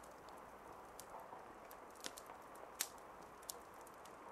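Near silence: faint steady hiss with a few soft, brief clicks.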